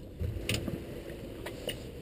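Low background noise with a few short, sharp clicks, about half a second in and again near the end.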